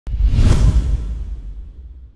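An intro whoosh sound effect with a deep low boom: it starts suddenly, swells for about half a second, then fades away through the rest of the two seconds.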